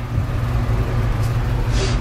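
A steady low rumble, with a brief rustle near the end.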